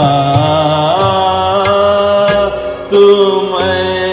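Male voice singing long, gliding vowel notes without words in Raag Malkauns over a steady drone and accompaniment.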